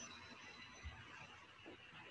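Near silence: faint room tone in a pause of the narration, with one faint soft tick about a second in.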